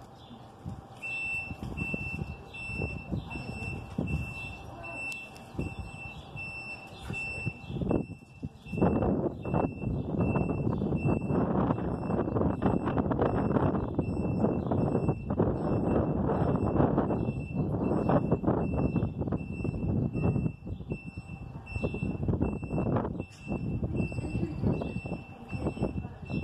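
Wind gusting across the microphone from about eight seconds in, a loud uneven rumble that comes and goes, over a high electronic beep repeating about twice a second.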